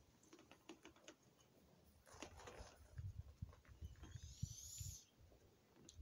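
Near silence: quiet ambient background with a few faint small clicks, and a faint low rumble in the second half.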